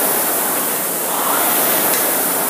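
Steady whooshing of a rowing ergometer's fan flywheel spinning.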